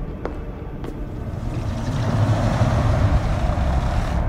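A couple of footsteps on a hard floor, then a low rumbling whoosh that swells up over about two seconds and cuts off abruptly at the end.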